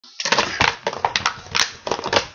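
A Staffordshire bull terrier chewing on a plastic bottle: rapid, irregular crackles and clicks of the plastic being bitten and crushed.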